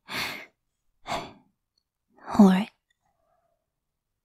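A woman's short, breathy exhalations at the start and about a second in, then a louder voiced sigh with a wavering pitch about two and a half seconds in. The sounds are those of someone embarrassed and close to tears.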